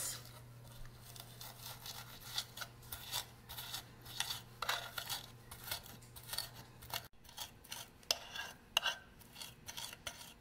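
Tip of a metal fork scraping and pressing garlic cloves and salt against a wooden cutting board, creaming them into a paste: a run of short, irregular scrapes and taps.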